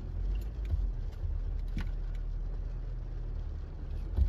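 Manual-transmission car's engine running at low revs, heard inside the cabin as a steady low rumble, with a few faint clicks.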